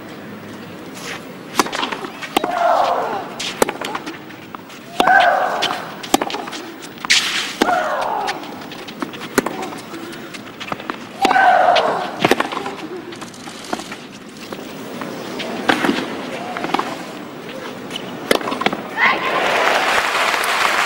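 Tennis rally on a clay court: racket-on-ball strikes about every second or so, with a loud shriek falling in pitch from one player on every other stroke, four times in the first half.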